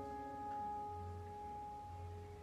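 A grand piano chord left ringing and slowly dying away, quiet and steady, in a pause between chords of an opera aria accompaniment.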